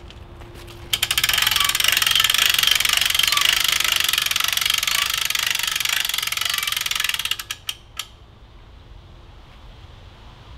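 Coop's Bowsmith Pro bow-shooting machine being worked by hand to draw a Prime Logic compound bow: a loud run of rapid ratcheting clicks lasting about six seconds, then three separate clicks as it stops.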